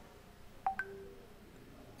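A short electronic chime about two-thirds of a second in: a few quick beeps at different pitches, the last one lower and held briefly, over faint room tone.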